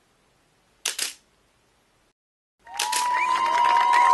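A single smartphone camera shutter sound about a second in, from a phone on a selfie stick taking a group photo; otherwise near silence. Near the end, a crowd starts clapping and cheering.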